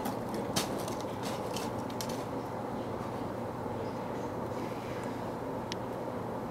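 Steady outdoor background hum and hiss, with a few faint clicks in the first two seconds and one brief high-pitched note near the end.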